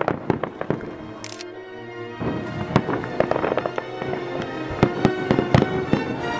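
Aerial fireworks going off in a string of sharp bangs and crackles. The biggest bang comes right at the start and several more fall in the last second and a half. Music plays along from about two seconds in.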